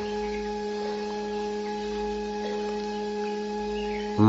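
Steady background music drone: a single low note with its overtones, held unchanged.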